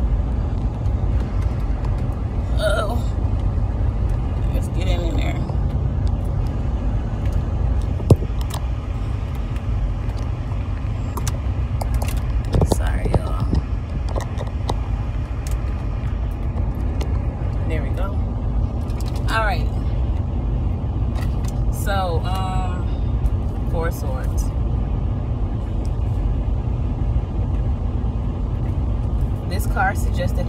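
Steady low rumble of a car engine idling, heard from inside the cabin. A sharp click and a few knocks come from the phone being handled, and brief faint snatches of voice rise over the rumble now and then.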